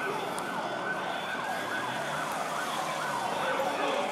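Several police sirens wailing at once, their pitches sweeping up and down out of step with each other, over a steady hubbub of street noise.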